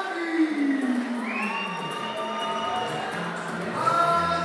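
A male ring announcer's drawn-out fighter introduction through a microphone. His voice slides down in pitch, then holds one long call, with the crowd cheering.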